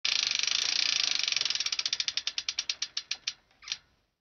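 Bicycle freewheel pawls ticking as the wheel coasts and slows: rapid clicks at first, spacing out steadily until they stop, with one short softer click-rush just before the end.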